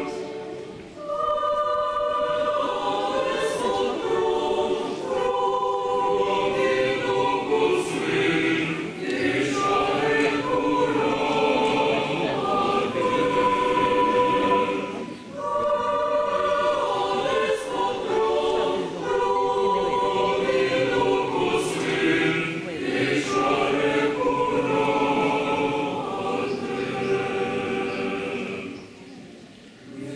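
Mixed choir of young voices singing a Christmas carol (koliadka) in harmony, unaccompanied, in long phrases with short breaks for breath.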